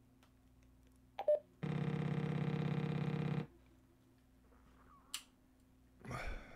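DMR handheld radio keyed up for a hotspot bit-error-rate calibration: a short beep, then a buzzing tone for nearly two seconds, and a brief rising chirp near the end.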